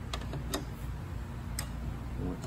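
Three short, sharp clicks as the bicycle fork legs and the axle bolt spreading them are handled, over a steady low hum.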